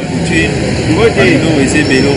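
Busy street ambience: several people talking at once over a steady din that includes traffic.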